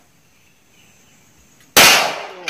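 A single handgun shot near the end, sharp and loud after a quiet stretch, with its report dying away.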